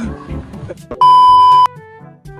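An electronic beep sound effect: one loud, steady, high-pitched tone lasting about two-thirds of a second, starting about a second in and cutting off sharply, over faint background music.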